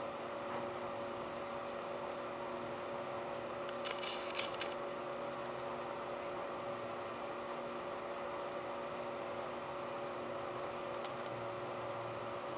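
Steady background hiss with a low electrical-sounding hum. About four seconds in there is a brief burst of clicks lasting under a second.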